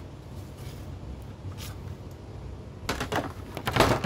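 Rustling and clattering as a plastic CED videodisc caddy is handled to get the disc out. The sounds come in an irregular cluster from about three seconds in, over a steady low hum.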